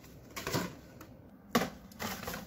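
Flattened cardboard cartons being handled and laid down on a floor: a few light paper-cardboard rustles and slaps, the sharpest one about one and a half seconds in.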